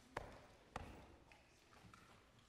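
Quiet room tone in a large hall, broken by two sharp knocks about half a second apart, each with a short ringing tail.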